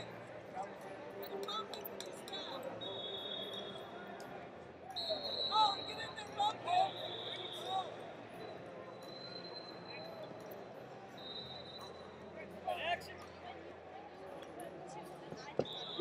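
Wrestling arena ambience: scattered distant shouts from coaches and spectators, a few long high steady tones, and occasional thuds from the mats.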